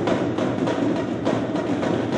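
A marching drumline playing a fast, driving cadence on its drums, a dense run of quick strokes with no break.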